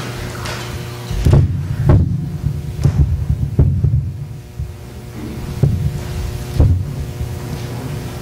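Heavy footsteps thudding on a hollow wooden platform, six of them roughly a second apart starting about a second in, over a steady electrical hum from the sound system.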